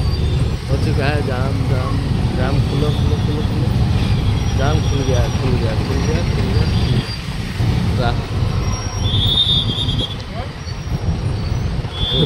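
Busy city road traffic heard from a motorcycle moving through it: a steady low engine and road rumble, with voices now and then. There is a brief high-pitched tone about nine seconds in.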